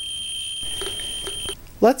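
Ludlum survey meter with a 44-2 gamma scintillation probe giving a continuous high-pitched tone, its clicks run together because the count rate is so high from a person dosed with technetium-99m that the meter is pegged. The tone cuts off suddenly about one and a half seconds in.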